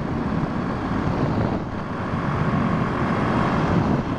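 Motorcycle running steadily at road speed, its engine sound mixed with wind and tyre noise on asphalt.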